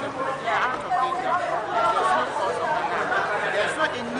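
Chatter of many people talking at once, overlapping voices with no single clear speaker, starting suddenly as a recording cuts in.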